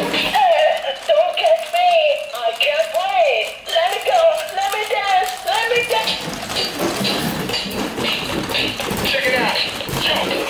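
Electronic dancing-goose toy talking through its small speaker in a high-pitched, sped-up cartoon voice, babbling with sliding pitch for about the first six seconds. After that a busier, noisier jumble of the toy's electronic sounds takes over.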